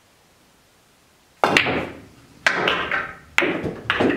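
A pool shot on a billiard table: after a quiet start, four sharp knocks about a second apart as the cue strikes the cue ball and the balls clack together and drop into the pockets, each knock trailing off briefly.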